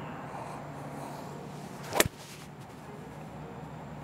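A Titleist TSR 3-wood striking a golf ball off a hitting mat about two seconds in: a brief swish of the downswing rising into one sharp crack of impact. The strike was a little fat, caught slightly behind the ball.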